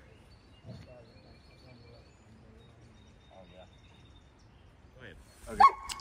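Quiet background with a dog barking faintly twice and faint distant voices; a man says "okay" just before the end.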